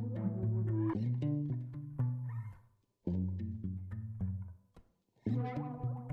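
Background music of held, layered notes, cutting out briefly twice.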